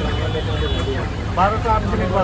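People talking over crowd noise, with a voice rising clearly about one and a half seconds in, all over a steady low rumble.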